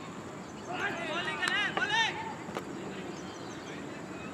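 Players' raised voices calling out on a cricket field for about a second and a half, with a short sharp click among them, over steady open-air background noise.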